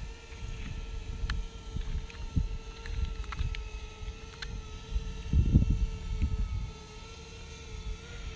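Small camera drone's propellers humming at a steady, slightly wavering pitch. Gusts of wind buffet the microphone, loudest about five and a half seconds in.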